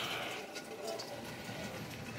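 Faint, steady outdoor background hiss with no distinct sounds in it.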